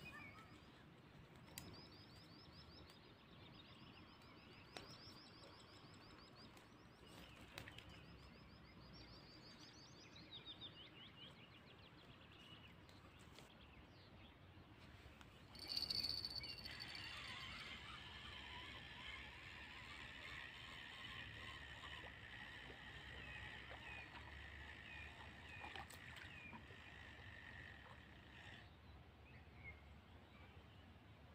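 Faint outdoor birdsong: short, fast, high trilled phrases repeated several times over the first dozen seconds. After a brief louder burst about 16 s in, a steady high-pitched chorus of calls with scattered chirps runs until just before the end.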